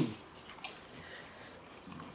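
Faint wet chewing and mouth sounds of a person eating fast, with a few small clicks, one sharper about two-thirds of a second in.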